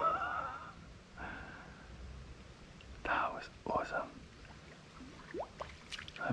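A person whispering or muttering under the breath in a few short bursts, with no clear words.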